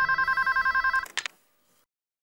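Corded desk telephone ringing with a rapid two-tone electronic warble. The ring cuts off about a second in, and a couple of short clicks follow as the handset is lifted.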